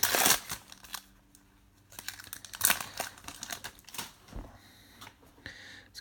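Foil trading card pack wrapper being torn open, with a loud crinkling rip at the start. More crinkling and rustling follows around the middle as the wrapper and cards are handled.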